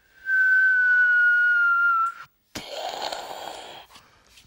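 A person whistling one long note that falls slightly, a mouth imitation of a firework rocket taking off. After a short gap comes a hissing rush lasting about a second.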